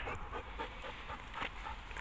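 A Belgian Malinois panting quietly, winded after hard exertion.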